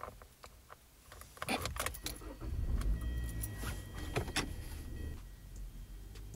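Car keys jangling at the ignition, with a few clicks. About two seconds in, the car's engine starts and runs, with a steady high tone alongside for about three seconds.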